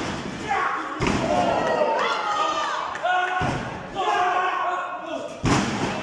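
Three heavy thuds of wrestlers' strikes and bodies hitting the wrestling ring: about a second in, past the middle, and near the end, the last the loudest. Voices shout over them.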